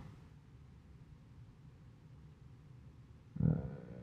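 Near silence: faint low room tone, with a man's brief 'uh' near the end.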